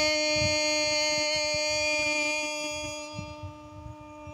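A woman's voice holding one long, steady note at the end of a phrase of Hmong kwv txhiaj sung poetry, fading away over the last second.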